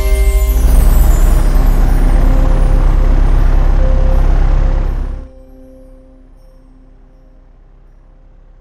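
Loud, deep rumble of aircraft engines played as a sound effect through a museum show's speakers, over music. It cuts off abruptly about five seconds in, leaving only quiet held music notes.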